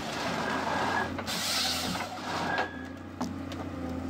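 Forestry harvester with a Waratah H414 head at work: the machine's engine runs steadily under hydraulic load, with a rush of cutting and processing noise from the head about a second and a half in.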